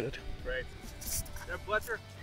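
A pause between speakers: faint, low voices, with a short rustle or hiss about a second in.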